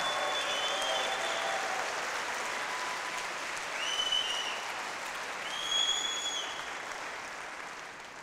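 Audience applauding, the clapping slowly fading toward the end, with a few short high-pitched tones over it near the start, about four seconds in and about six seconds in.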